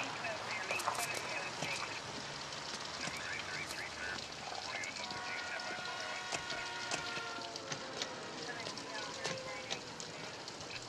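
Outdoor night ambience: a steady hiss with many scattered crackles and clicks, and a faint held tone with several pitches from about halfway through until near the end.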